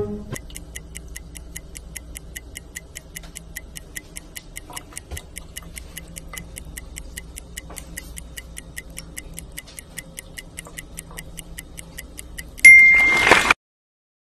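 A steady, high-pitched ticking, about four ticks a second, over a faint low hum. Near the end comes a short, loud burst with a ringing tone: the TikTok end-screen sound, cutting off suddenly.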